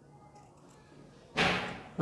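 Scissors and fabric being handled: one short, sudden rustling snip about one and a half seconds in, as a cup seam allowance is notched.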